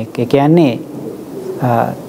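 A man's voice speaking in a drawn-out, sing-song preaching cadence, with two phrases whose pitch rises and falls, separated by short pauses.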